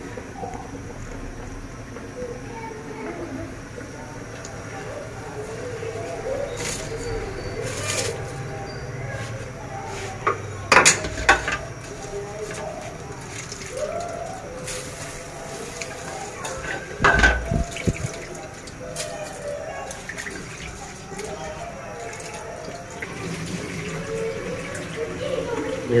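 Water boiling in a large aluminium pot of pea and potato broth, with soaked rice tipped into it partway through. There are a few sharp knocks against the pot, the loudest about two-thirds of the way in.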